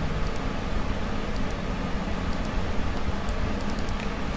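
Light computer mouse clicks, several scattered and a few in quick succession near the end, over a steady low hum and hiss from the computer and the microphone.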